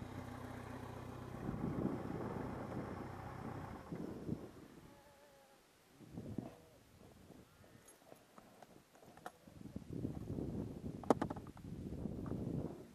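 Motorcycle engine idling steadily for about the first four seconds, then dropping away. After it come scattered clicks and knocks, with a sharp cluster of clicks near the end.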